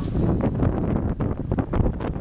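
Wind buffeting the camera microphone outdoors: a steady low rumble with uneven gusts.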